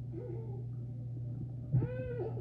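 Kitten meowing: a small short call about a fifth of a second in, then a louder, longer meow near the end that rises and falls in pitch.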